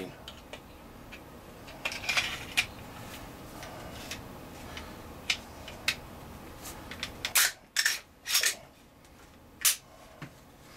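Glock 17 Gen 4 9mm pistol being reassembled and handled with its new recoil spring fitted: a series of sharp metallic clicks and clacks of the slide and frame. Several louder clacks come in quick succession in the second half, and another comes shortly before the end.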